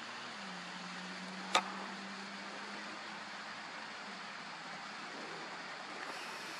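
Faint steady low hum over a background hiss, with one sharp click about one and a half seconds in.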